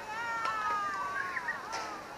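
High-pitched voices calling out across the field in long, drawn-out shouts that slide in pitch, with a sharp click about half a second in and another near the end.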